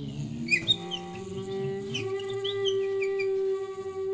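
Free-improvised music for Japanese bamboo flute and percussion. A lower pitched tone slides upward and, about halfway in, settles into a long steady held note rich in overtones. Short high chirping squeaks are scattered over it, a cluster early on and more in the second half.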